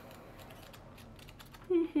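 Faint papery rustling of paperback book pages being leafed through, then a woman's short laugh starting near the end.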